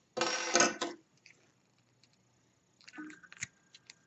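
A short clatter of handling noise about a second long, then a few faint clicks near the end, as a pair of scissors is picked up and opened over a stone countertop.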